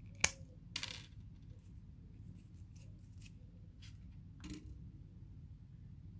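Thermal paste syringe and small hard parts handled on a desk: one sharp click about a quarter second in, then a brief clatter, and a softer knock about four and a half seconds in, over a low steady hum.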